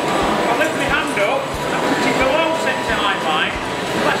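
Crowd chatter over a wood lathe running, with a gouge cutting a spinning wooden disc blank.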